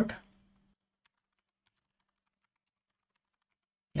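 Faint typing on a computer keyboard: a few light, irregular key clicks as a line of code is entered.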